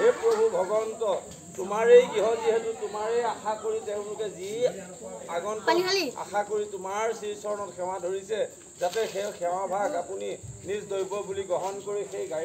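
A group of women chanting a devotional naam together, repeating a short refrain over and over in a sung, wavering line. A steady high insect trill, typical of crickets, sounds behind the singing.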